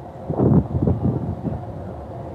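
Wind buffeting the phone's microphone: a low rumble that swells about half a second in, then carries on more evenly.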